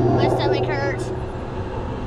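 Steady low rumble of a spinning saucer ride car in motion, with a brief wavering voice in the first second.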